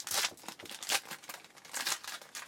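Foil trading-card pack wrapper being torn open and crinkled, in three short bursts.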